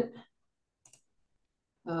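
Near silence with two faint, short clicks close together about a second in, between a voice trailing off at the start and speech resuming at the end.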